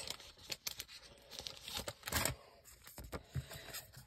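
Plastic trading-card sleeves being handled, with on-and-off rustling and crinkling and a louder rustle about two seconds in.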